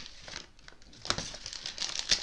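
A glittery pink gift bag crinkling and rustling as it is handled and opened, in a few short bursts, the clearest about a second in.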